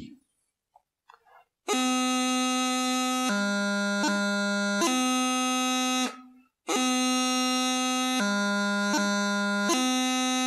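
Highland bagpipe practice chanter playing a taorluath movement from B, twice. Each time a held B drops to low G, quick grace notes follow, and it comes back to B. Each phrase lasts about four seconds, with a short break between.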